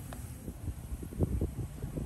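Wind buffeting the microphone: irregular low rumbles and soft thumps.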